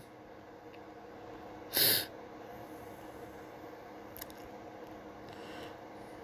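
A single short, sharp breath noise from a person close to the microphone, about two seconds in, over a faint steady hum; a couple of faint clicks follow later.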